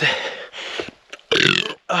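A man's loud belch, about a second and a half in: a runner bringing up burps to ease nausea.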